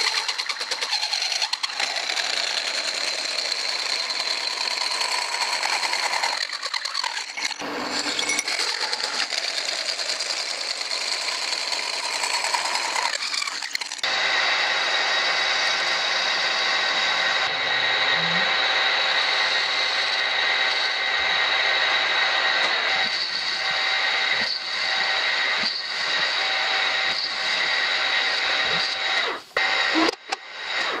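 An electric welding arc crackling steadily in long runs as steel is welded, with brief breaks about 7 and 14 seconds in.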